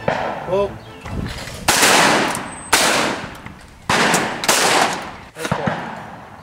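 Over-and-under shotgun fired four times in two pairs: two shots about a second apart, then two about half a second apart, each report trailing off quickly.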